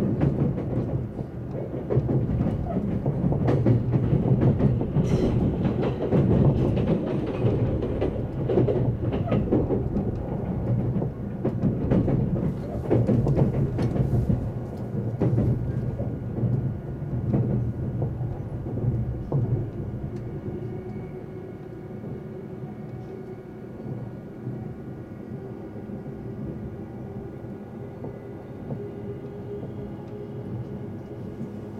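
Inside the cabin of an E353-series electric limited express train running at speed: a loud rumble with rattling and clattering from the wheels on the track. About twenty seconds in it drops to a quieter, steadier running noise with faint steady tones.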